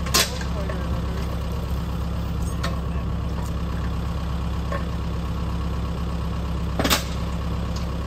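Compact tractor engine idling steadily, with two sharp knocks, one just after the start and one near the end.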